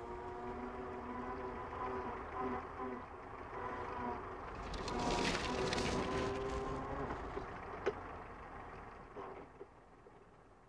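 Small truck's engine running after starting, getting louder around five seconds in as it pulls free of the snowdrift and drives off, then fading away into the distance.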